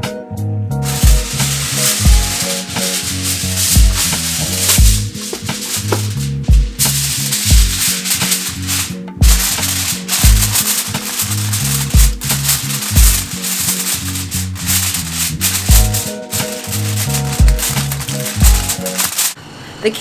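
Aluminium foil crinkling and rustling as it is handled and pressed over a baking dish, with a few short pauses. Under it runs background music with a bass beat about once a second.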